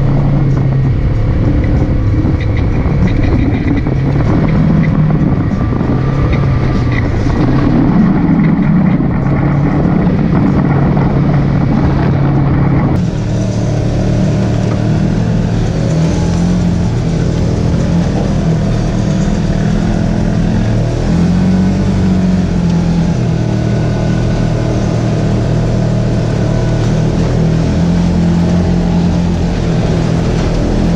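Polaris RZR side-by-side engine running steadily as it drives along a rough dirt trail. About halfway through, the sound changes suddenly to the machine heard from inside its open cab.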